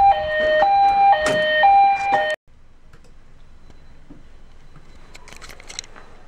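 Building fire alarm sounding for a fire drill: a loud electronic two-tone hi-lo tone, switching pitch about every half second. It cuts off suddenly about two and a half seconds in, leaving quiet room tone with a few faint clicks near the end.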